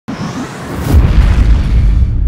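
Cinematic logo-intro sound effect: a swelling whoosh of noise that breaks into a deep bass boom about a second in, the low rumble carrying on after it.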